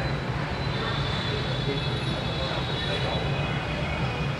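Steady background road-traffic noise, an even low rumble with no distinct events.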